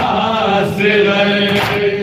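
Group of men chanting a noha, an Urdu lament, in unison, their voices holding long drawn-out notes, with a sharp strike near the end that may be a beat of chest-striking matam.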